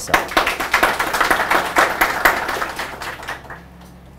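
Audience applauding, many hands clapping at once, dying away about three and a half seconds in.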